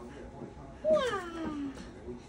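Golden retriever puppy giving one whining cry a little before halfway through, a call that jumps up then slides down in pitch over most of a second: begging for more food.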